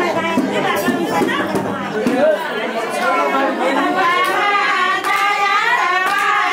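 A group of women's voices singing a ratauli song together to hand-clapping, with overlapping talk mixed in. The singing becomes steadier and more sustained in the second half.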